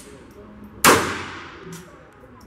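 One shot from a Phoenix Arms HP22A .22 LR semi-automatic pistol a little under a second in: a sharp crack whose echo in the indoor range dies away over about a second.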